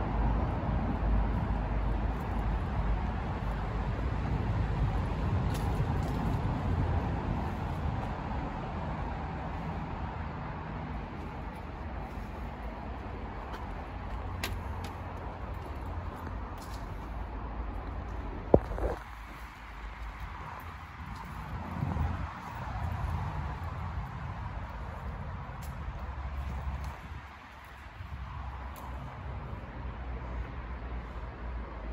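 Outdoor background rumble that eases off over time, with a single sharp click about two-thirds of the way through.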